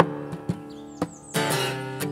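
Acoustic guitar strummed in a country song's instrumental break: a handful of chord strokes, the strongest at the very start and a fuller one a little over halfway through, with the strings ringing between them.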